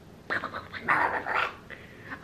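A person doing a Donald Duck voice: garbled, raspy duck-like babble in several short bursts.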